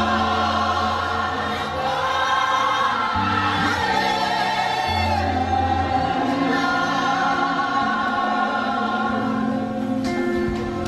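Live gospel praise music: voices singing together, choir-like, over a band with held bass notes that change every second or two.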